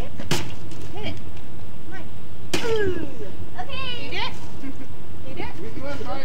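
A stick striking a hanging piñata twice, two sharp whacks about two seconds apart, among the voices of children and adults.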